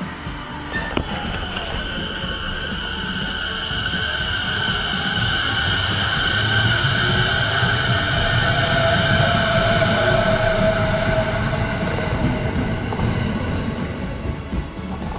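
Electric commuter train at a station platform, running with a steady high-pitched whine over a low rumble, growing louder toward the middle and easing near the end. Background music plays along with it.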